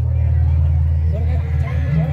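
A steady, deep low hum, with voices coming in over it about a second in.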